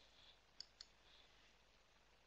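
Near silence broken by two faint computer mouse clicks a fraction of a second apart, a little over half a second in.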